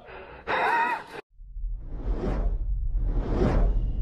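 A brief shout, cut off abruptly, then intro sound effects: two swelling whooshes about a second apart over a steady deep bass drone.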